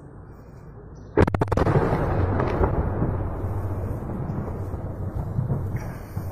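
Missile strike explosion: a sudden blast about a second in, with a few sharp cracks in quick succession, then a long rumble that slowly dies away.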